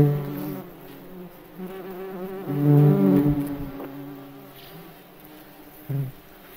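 May bug flying, its wings giving a low buzz that swells and fades as it passes close. It is loudest at the start and again about three seconds in, and faint in between.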